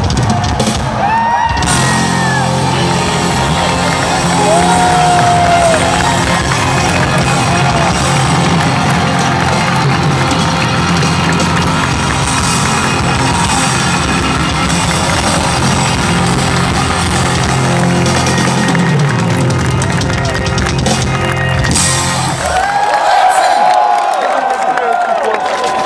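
Rock band playing live in a large venue, recorded from among the audience, with whoops from the crowd. The music stops about 22 seconds in and the crowd cheers.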